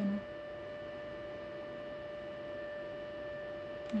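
A steady, even hum: one pitched tone with its overtones, holding unchanged throughout.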